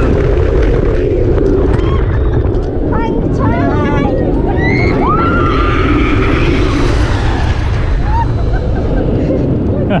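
Tigris launched steel roller coaster in motion, heard from the front seat: a continuous rumble of the train on the track and a rush of wind on the microphone. It grows louder and brighter about halfway through. Riders' voices rise in shrieks and whoops partway through.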